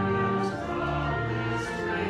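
Church music: a choir singing with organ, held chords that change every half second or so.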